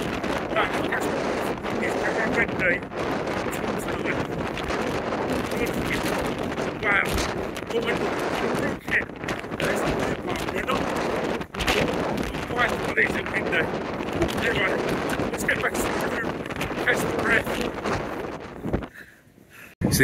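Strong wind battering a phone microphone in continuous rough, crackling gusts. It dies away just before the end.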